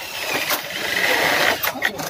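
Cordless drill running under load into an aluminium cabinet frame profile, getting louder over about a second and a half, with sharp clicks about half a second in and again near the end.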